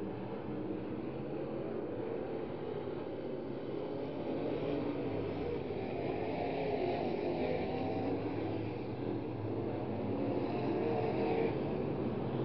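A field of B-Modified dirt-track race cars running laps at speed. Their V8 engines make a continuous drone that swells as cars come closer, loudest around the middle and again near the end.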